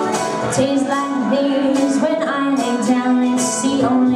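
Live bluegrass band: a woman singing over a mandolin and a resonator guitar played with a slide, with hand percussion keeping time.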